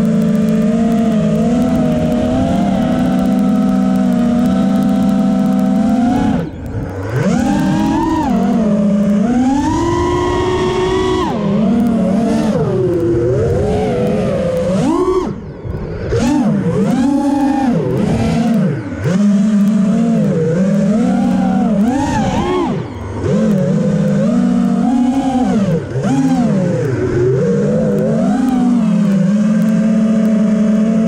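A multirotor drone's motors and propellers buzzing in a steady hover, then whining up and down in pitch over and over as it swoops and turns. The sound briefly drops out several times where the throttle is eased off.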